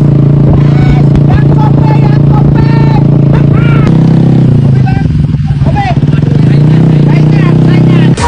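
A small Honda underbone motorcycle engine running steadily under way. Its note rises briefly about four seconds in, then settles back, while a man's voice talks over it.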